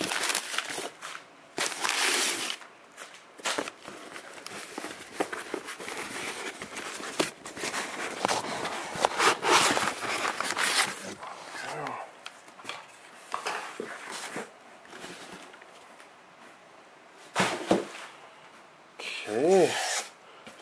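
Crumpled newspaper packing rustling and crinkling in irregular bursts as it is pulled out of a cardboard shipping box, with the box being handled.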